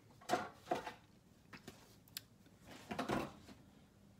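Plastic knocks, clicks and scrapes as a Sizzix Big Shot die-cutting machine's clear plates and fold-out platform are handled and opened up. There are two knocks in the first second, a click about two seconds in, and a longer scraping clatter about three seconds in.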